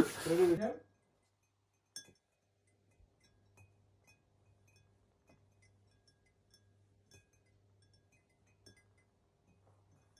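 One light clink on a water-filled drinking glass about two seconds in, then very faint scattered taps and ringing from the glasses, over a faint low hum.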